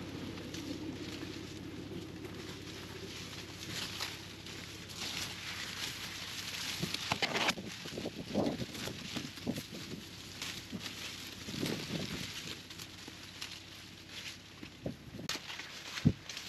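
Dry corn leaves and stalks rustling as someone pushes through a cornfield on foot. The rustling comes in irregular bursts from about four seconds in, with leaves brushing close to the microphone.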